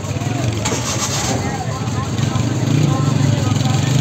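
A vehicle engine running steadily with a low hum, growing louder about two and a half seconds in, with people's voices in the background.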